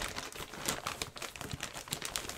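Clear plastic bag holding a jersey crinkling as hands handle and fold it, a rapid run of small irregular crackles.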